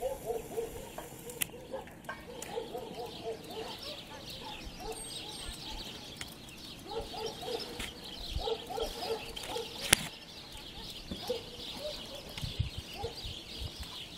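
Domestic hens clucking in short, repeated bursts over a continuous chatter of house and tree sparrows chirping. A single sharp click about ten seconds in.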